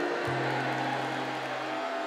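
Background music of held, sustained chords, with a low bass note that comes in shortly after the start and drops out near the end.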